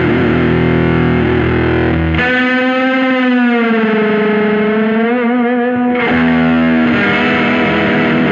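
Overdriven electric guitar, a 1994 Japanese Fender Jazzmaster played straight into a Twin Reverb amp simulation. Distorted chords, then a held note from about two seconds in that the vibrato arm bends down in pitch and slowly back up, then chords again about six seconds in.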